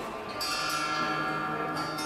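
Strings of the bridge-shaped harp plucked by hand, sounding together about half a second in and ringing on, with another pluck near the end.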